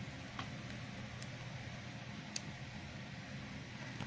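A few faint, small clicks of blue plastic toy figure parts being handled, over a steady low room hum.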